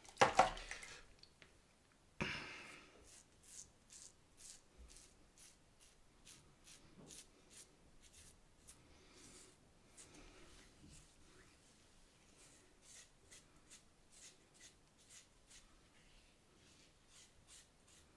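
Short scraping strokes of a safety razor cutting through lather and stubble on a scalp, about two a second, faint, after a couple of louder rustles at the start. The blade is near the end of its life and is beginning to tug.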